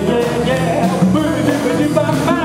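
Live band playing a song, with electric and acoustic guitars and saxophone, and a man singing lead at the microphone.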